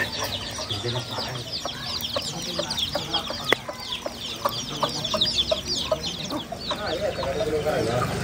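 A brood of chicks peeping continuously, many short falling peeps overlapping several times a second, with a hen clucking among them.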